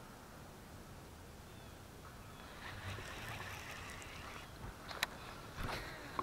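Faint handling sounds of a fishing rod and reel: a rustling stretch, then a few sharp clicks near the end.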